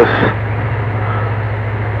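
CB radio receiver's speaker putting out a steady hiss of band noise with a low hum underneath, in the gap between transmissions on the 11-metre band.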